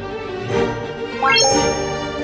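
Background music with a quick rising run of chime notes about a second in, ending on a bright held ding: an added sparkle sound effect.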